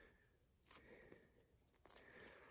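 Near silence, with a few faint soft tearing sounds as a duck carcass is worked by hand and knife.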